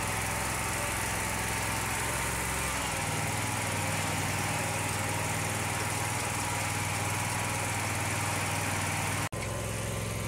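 Steady drone of a zero-turn mower engine towing a spring-tine dethatcher. The low engine note shifts about three seconds in, and the sound drops out for an instant near the end.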